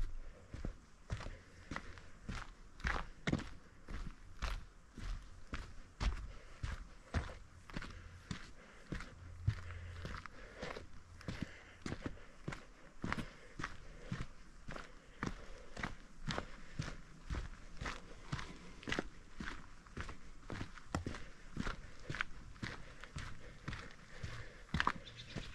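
Footsteps of a hiker walking steadily along a dirt and stone forest trail, about two steps a second.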